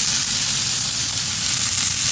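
Meat chops sizzling in a hot cast iron grill pan: a steady, bright hiss with no breaks.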